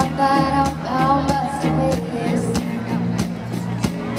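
Live country band playing with a steady drum beat, electric guitar and bass, heard loud in a large hall.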